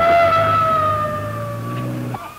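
Police car siren held on one steady note, sagging slightly in pitch and cutting off near the end, with the car's engine running underneath as it pulls away.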